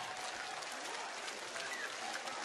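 A large seated audience clapping steadily, many hands together.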